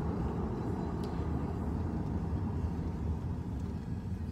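Steady low road and engine noise of a moving car, heard from inside the cabin.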